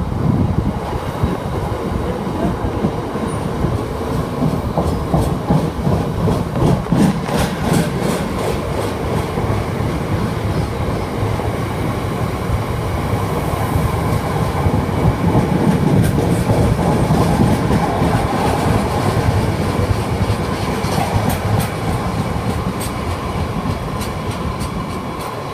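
Freight train of loaded hopper wagons rolling past, a steady rumble of wheels on rail with bursts of clicking as the wheels cross rail joints, about a third of the way in and again near the end.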